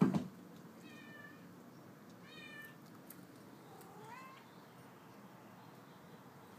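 A domestic cat meowing three times: short, high-pitched meows about a second and a half apart, the last rising in pitch. A brief loud knock comes right at the start.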